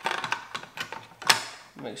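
Hard plastic clicking and knocking as a smoked LED turn signal is handled and seated into a disassembled Honda Civic Type R side mirror housing, with one sharper click just after a second in.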